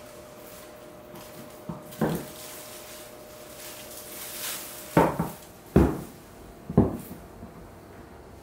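Knocks and thumps from a person clambering over artificial rockwork. There is one small knock about two seconds in, then three louder thumps in quick succession in the second half, over a faint steady hum.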